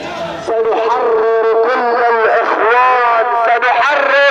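A single voice chanting loudly, starting about half a second in, with long drawn-out notes that hold and then glide.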